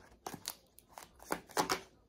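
A deck of tarot cards being shuffled by hand: several short, sharp papery flicks and clicks of the cards.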